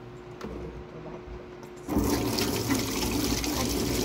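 Kitchen faucet turned on about two seconds in: water running hard over hands and splashing into a stainless-steel sink as they are washed. Before that, only a faint steady hum.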